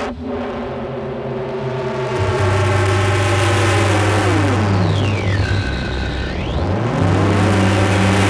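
Electronic noise music in a drumless break. A sustained buzzing synthesizer drone sits over a steady deep bass tone. About four seconds in, the drone dives in pitch, then sweeps back up near the end, much like an engine revving down and up.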